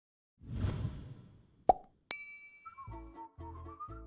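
Title-card sound effects: a soft whoosh, a single plop, then a bright chime that rings and fades. Light intro music with a steady beat starts about three seconds in.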